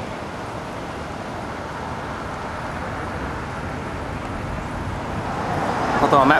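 City street traffic noise: a steady wash of cars on the road.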